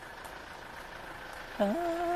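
Faint street background noise, then about one and a half seconds in a man starts humming a tune, holding one steady note.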